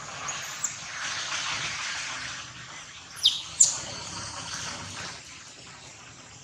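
A bird gives two short, high chirps a third of a second apart, a little past three seconds in, each sliding quickly down in pitch, over a steady outdoor hiss.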